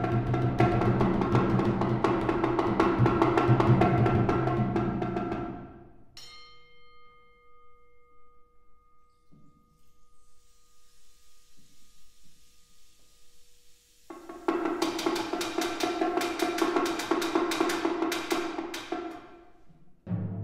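Live solo percussion: a fast, dense flurry of drum strokes for about five seconds, then one struck note ringing on with clear overtones, a soft hiss, and a second fast flurry of drum strokes starting about fourteen seconds in.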